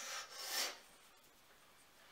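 Two short rubbing strokes of hands over a cream-covered face during a face massage, the second stroke the louder, both within the first second.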